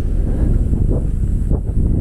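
Wind buffeting the microphone outdoors: a steady, loud low rumble.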